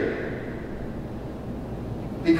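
Steady low background noise of the room (room tone), with no distinct event.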